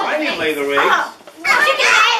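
Only speech: young children's voices talking, one saying "eggs", with a short pause about a second in.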